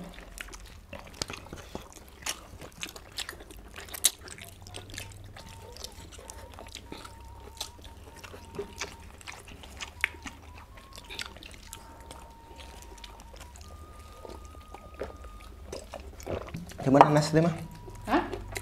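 Eating sounds at a shared meal: lip smacks, chewing and many small scattered clicks of fingers and food on plates. A voice breaks in near the end.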